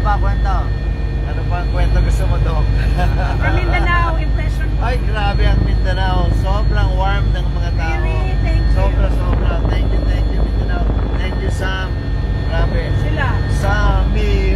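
Helicopter engine and rotor noise heard from inside the cabin: a steady low drone with a few steady whining tones over it.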